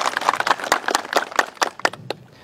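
A group of people clapping their hands, a quick, irregular patter of many sharp claps.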